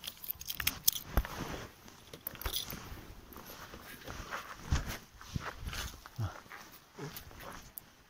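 Faint, irregular rustling and scattered clicks from a handheld camera being moved about, with a few short knocks like footsteps.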